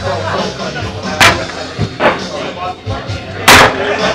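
Two sharp clacks of pool balls knocking together as the balls are gathered and racked on a pool table, one about a second in and a louder one near the end.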